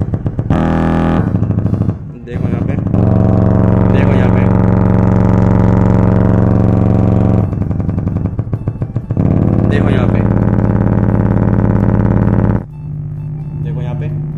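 A woofer playing low test tones from a phone tone generator, with a loud buzzing, distorted flutter ('phat-phat-phat') in stretches of a few seconds and brief dips as the frequency is changed. The distortion on low bass is the sign of a damaged woofer that shouldn't sound like this. Near the end it gives way to a quieter, steadier low hum.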